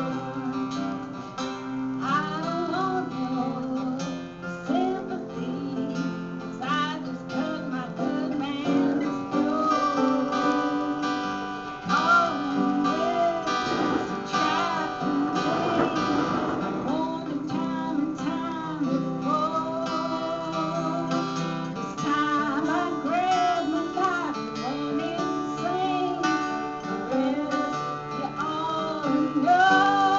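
Two acoustic guitars playing a blues together, strummed, with no break.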